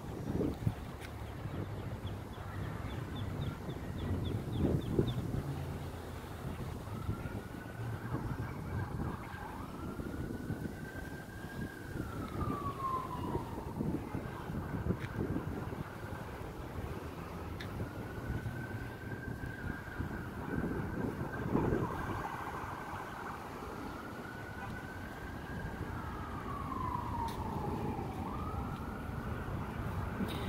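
A siren wailing: one tone that slowly rises, holds and falls again, over and over, starting several seconds in, over a steady low rumble.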